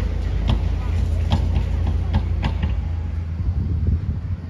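Outdoor street ambience: a steady low rumble with a few short sharp clicks in the first two and a half seconds.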